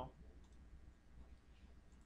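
Near silence: room tone with a low steady hum and a few faint computer-mouse clicks.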